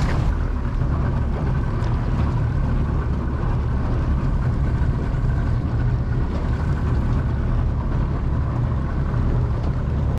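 Boat's outboard motor running steadily at trolling speed, a low even drone, with a steady rush of wind and water over it.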